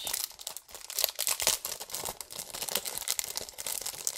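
Small clear plastic packaging bag crinkling continuously as fingers work it open to get the item out.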